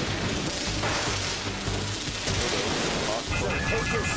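A continuous rushing roar over a low rumble, the sound of a volcanic eruption, under dramatic music.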